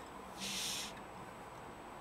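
A person's short breathy exhale, about half a second long and faint, a little under a second in.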